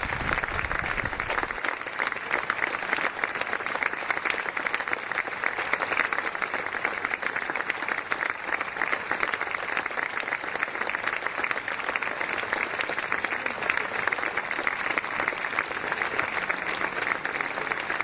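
Steady applause, many hands clapping in a dense, even crackle that neither swells nor fades.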